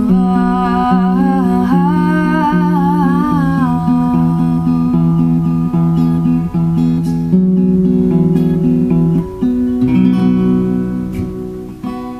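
Acoustic guitar picked in a slow, steady pattern, with a woman's voice holding a wordless, wavering melody over it for the first few seconds. Near the end a final chord rings and fades away.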